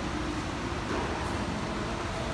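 Steady background noise of a large room: a low hum with hiss and no distinct event.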